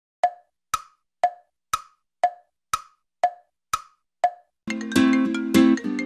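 Wood-block tick-tock sound effect: nine crisp knocks, two a second, alternating low and high in pitch, in dead silence. Background music starts just before the end.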